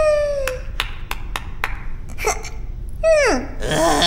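A cartoon character makes wordless vocal sounds: a falling call at the start and another falling squeal about three seconds in. Between them come about five sharp taps, roughly three a second.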